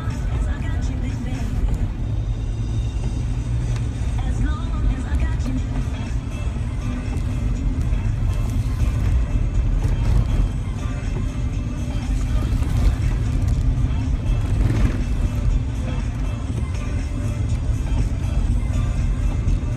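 Music from a car radio playing inside a moving car's cabin, over a steady low rumble of the car's engine and tyres on the road.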